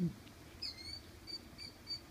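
A small songbird calling outdoors: one downward-slurred high chirp, then a string of short, high chirps at about three a second.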